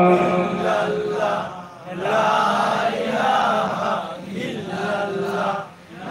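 A man's voice chanting melodically into a microphone: long held notes that glide in pitch, in two phrases broken by short pauses about two seconds in and near the end.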